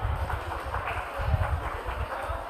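Room noise just after the organ has stopped: an uneven low rumble with scattered soft knocks and a faint, indistinct murmur.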